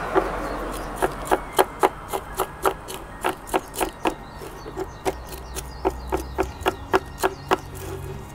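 Metal root hook scraping and picking through the soil and fine roots of a hinoki bonsai's root ball. It starts as a scraping rush, then becomes a quick series of sharp scratchy clicks, about three or four a second.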